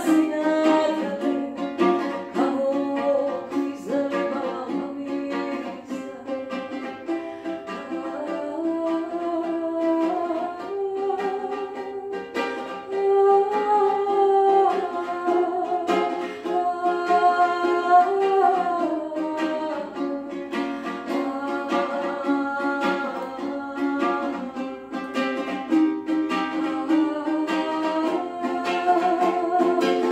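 A woman singing with her own strummed ukulele accompaniment, her voice carrying the melody over steady chords.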